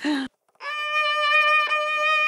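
A violin starting about half a second in with one long bowed note held steady.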